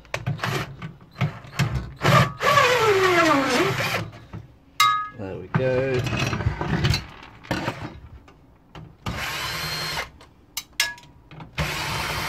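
Cordless drill/driver backing screws out of a PC's sheet-steel drive cage, its motor running in several short spells. In one, about two seconds in, the whine falls steadily in pitch. Between the spells come sharp clicks and metal clatter.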